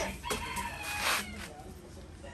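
A rooster crowing, starting shortly after the beginning and lasting about a second.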